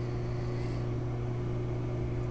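Steady low electrical hum at an unchanging level, a room's background drone with no other events.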